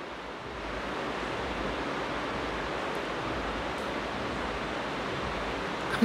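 Steady, even hiss of background noise with no speech, the recording's noise floor in a pause of the talk.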